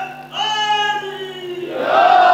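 A man's voice, amplified through microphones, drawing out long sung notes in his speech: a held note breaks off, a new one starts and slowly sinks lower, then the voice swells louder near the end.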